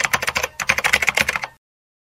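Typing sound effect: a rapid run of key clicks that stops suddenly about one and a half seconds in.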